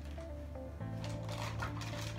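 Background music with sustained low notes that change to a new chord a little under a second in.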